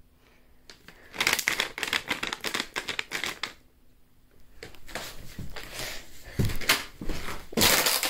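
Bag of ferret treats or food being shaken, a crinkling rattle in two bouts with a short pause between, the second growing louder near the end: shaken to lure the ferrets out of their cage.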